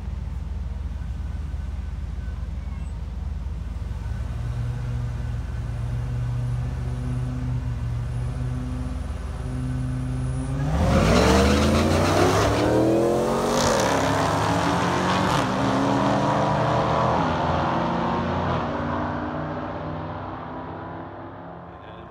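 Two supercharged V8s, a Dodge Charger Hellcat's and a Ford SVT Lightning pickup's, idle at the drag-strip starting line. About ten seconds in they launch at full throttle, their pitch climbing, dropping back and climbing again through the gear changes. The sound fades as they run away down the quarter mile.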